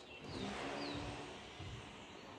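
A small bird gives a few short, high, falling chirps in the first second, over faint outdoor background noise.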